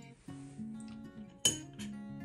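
Soft background guitar music, with one sharp metallic clink about one and a half seconds in as a metal wick bar is handled against a candle tin.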